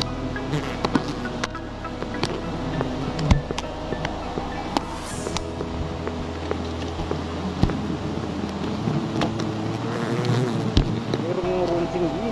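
Giant honey bees from an open-air comb swarming close around, making a steady buzzing hum with a clear pitch, with scattered sharp ticks over it.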